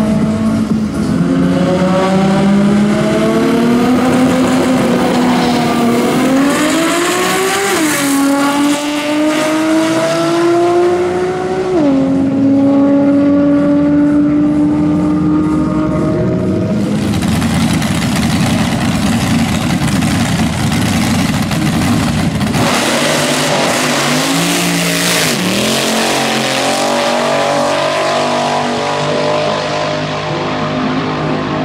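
Drag racing car engine under full throttle down the strip, its pitch climbing and dropping sharply at several gear changes. A stretch of rougher noise follows, then another engine revs, dipping once.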